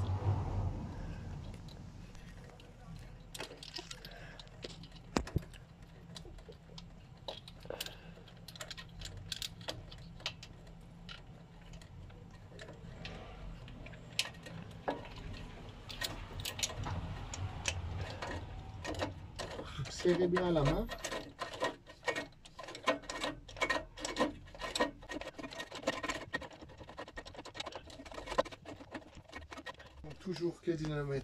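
Irregular metallic clicks and taps from a ratchet wrench and spark-plug socket as a new spark plug is threaded in and tightened by feel, the clicks coming thicker in the second half.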